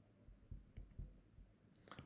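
Near silence with several faint, short taps of a stylus on a tablet screen while a word is handwritten.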